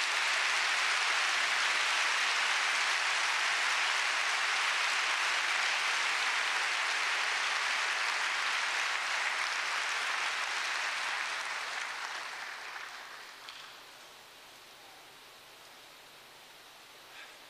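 Large audience applauding, a steady clapping that dies away after about twelve seconds.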